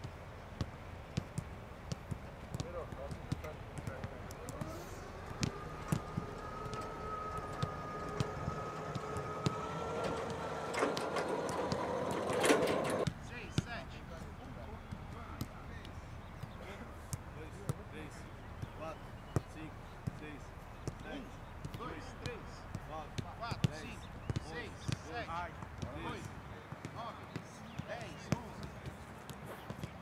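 Footballs being kicked back and forth in a passing drill: many short, sharp, irregular thuds of boot on ball, with players' voices calling out over them.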